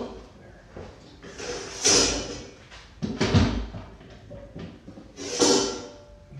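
Workshop objects being moved about by hand while searching for a piece of scrap wood: three separate bouts of scraping and knocking a second or two apart, the middle one with a heavy thud.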